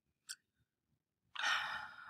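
A brief click, then near the end a woman drawing an audible breath, a sigh-like intake, just before she speaks.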